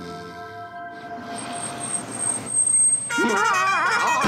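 Cartoon soundtrack: soft sustained music under a rising rush of noise. About three seconds in, a loud wavering cartoon yell takes over as the cat is startled awake.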